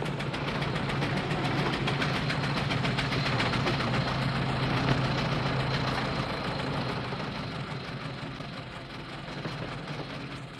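Early Cadillac motor car's engine running as the car drives along, a steady low hum with a fast, even beat, fading after about six seconds as the car slows and pulls up.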